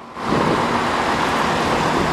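Steady urban street traffic noise, an even hum of road traffic that swells in just after the start.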